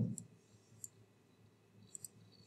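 A few faint, short computer-mouse clicks, three in about two seconds.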